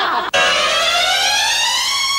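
A single siren-like tone rising smoothly and steadily in pitch for about two seconds, starting just after a burst of laughter ends.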